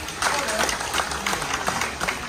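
An audience clapping, starting about a quarter second in, with voices of the crowd mixed in.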